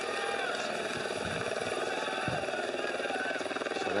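Steady, fast-pulsing motor drone from the vehicles that accompany the riders on the climb, picked up by the broadcast sound.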